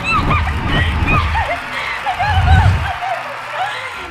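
A girl laughing hard and squealing close to the microphone, over low rumbling thumps of movement that are loudest about two and a half seconds in.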